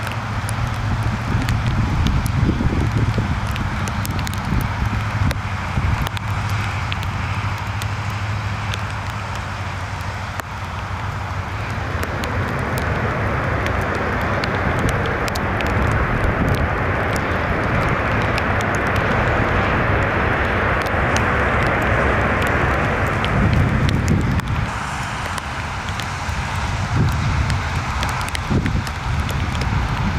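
Twin-engine widebody jet airliner landing on a wet runway: steady engine rumble with tyre spray, then a broad rising rush of reverse thrust about twelve seconds in that holds for some ten seconds and eases off. Frequent short crackles run through it.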